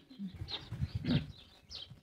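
Faint birds chirping in the background: a few short, high chirps scattered through the pause, over soft indistinct low sounds.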